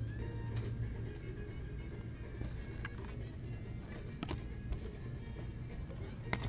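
Quiet background music over a steady low hum, with a few soft clicks of baseball cards being flipped through a stack.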